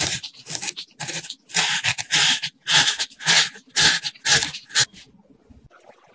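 A log of cookie dough rolled back and forth in granulated sugar: gritty swishes about two a second, stopping about five seconds in.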